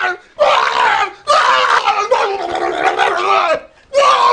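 A man screaming in fright: a short high-pitched scream, then a long drawn-out one.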